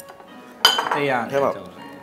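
A sharp clink of tableware about two-thirds of a second in, with a brief ring, followed by a voice speaking for about a second over faint background music.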